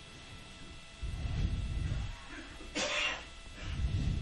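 Muffled low sounds and faint background voice noise on an open mission communications loop, with one short breathy burst about three seconds in, like a cough or throat clearing near a microphone.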